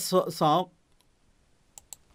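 A man's voice speaks briefly at the start, then a quiet pause ending in two quick, sharp clicks about a tenth of a second apart near the end.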